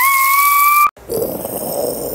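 Cartoon sound effects: a high whistling tone, rising slightly over a hiss, that cuts off abruptly just before a second in, followed by a lower rushing noise.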